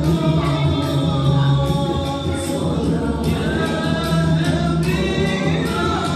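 Three men singing together into microphones over a karaoke backing track, their voices amplified through the sound system.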